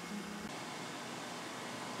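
Steady low hiss of background noise, with a faint hum that stops about half a second in.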